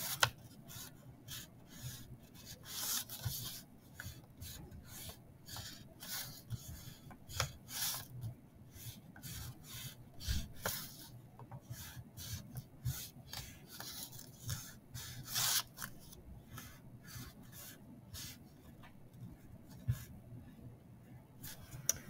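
Wax crayon drawn across a paper plate in short zigzag strokes: a run of scratchy rubs, roughly one or two a second, some louder than others.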